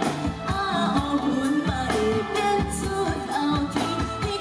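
A woman singing a pop song into a handheld microphone over band accompaniment with a steady drum beat, amplified through a stage sound system.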